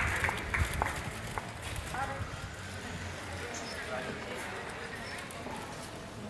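The last few scattered hand claps of an audience's applause dying away over the first second and a half, then faint voices of people talking over a quiet outdoor background.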